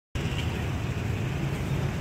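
Steady city street traffic noise, a continuous low rumble of passing engines.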